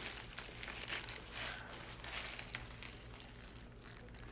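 Faint crinkling and rustling of paper sandwich wrappers being handled while eating, with scattered small clicks over a low steady room hum.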